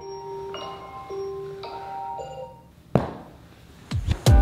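Phone alarm ringing with a soft marimba-like melody of single notes, which stops a little before three seconds in. A single sharp knock follows, then louder music with a beat starts near the end.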